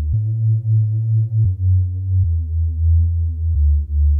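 Deep house sub bass patch from the Xfer Serum soft synth: sine oscillators with a sub one octave down and a unison layer. It plays a bassline of long held notes, changing pitch about once a second, four notes in all.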